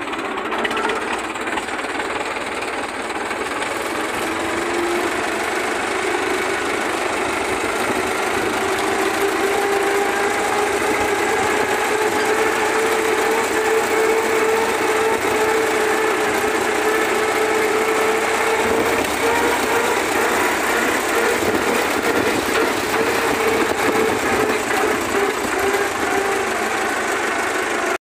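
Farm tractor engine running as the tractor drives along in third gear. It climbs slightly in pitch and gets louder over the first several seconds as it picks up speed, then runs steadily.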